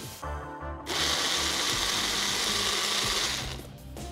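Small blender motor pulsing once for about two and a half seconds, chopping tomatoes, onions and chillies into a chunky salsa. It starts about a second in and stops near the end.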